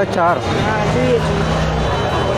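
Voices of market vendors and shoppers talking, with a low steady engine hum underneath from about half a second in.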